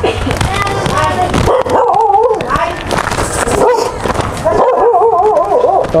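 A dog howling and whining in drawn-out, wavering calls, once about two seconds in and again in a longer call near the end.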